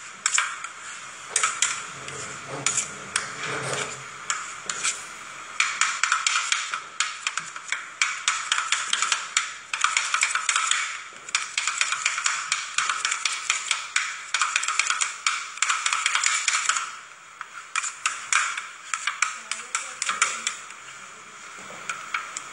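Two metal spatulas chopping and scraping an ice cream mixture on a frozen steel plate for rolled ice cream: rapid, sharp metallic tapping. The chopping runs unbroken from about a quarter of the way in to about three-quarters, with scattered strikes and scrapes before and after.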